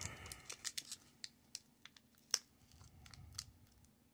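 Foil booster-pack wrapper crinkling and crackling in the fingers as its crimped top seal is picked at and pulled, a stubborn seal that won't tear open easily. Faint scattered crackles, with one sharper snap a little past halfway.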